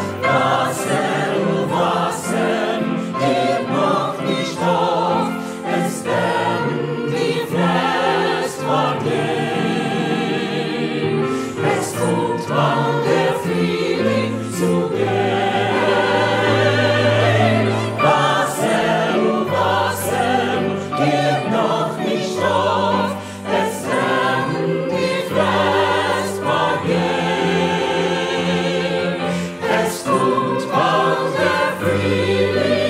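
Mixed choir of men and women singing a Yiddish song in harmony with piano accompaniment, continuous throughout.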